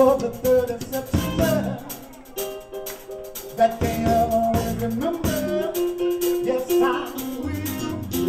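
Live R&B vocal group singing over a small band of drums, guitar and keyboards, with held notes and a steady bass line under the voices.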